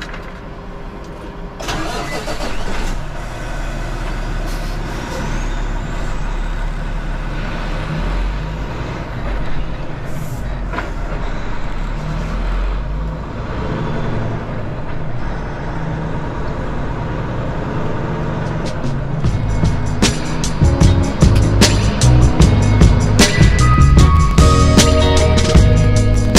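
Semi truck's diesel engine pulling away and running under load, a steady low rumble that picks up about two seconds in. Background music with a strong beat comes in near the end and becomes the loudest sound.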